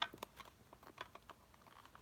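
Fingers riffling through a stack of Pokémon trading cards packed in a metal tin, making a run of faint, quick clicks from the card edges, with a sharper click at the start.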